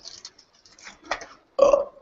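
A couple of faint clicks, then a short, low vocal sound from a person near the end.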